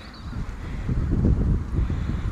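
Wind buffeting the microphone: an uneven low rumble that grows louder over the two seconds.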